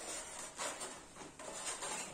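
Soft rubbing and scraping of thin 3 mm white board sheets being shifted and pressed together by hand on a cutting mat, with a few light taps.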